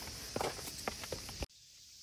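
Footsteps in sneakers going down stone steps: a few irregular taps and scuffs over a steady high insect drone. Both stop abruptly about one and a half seconds in.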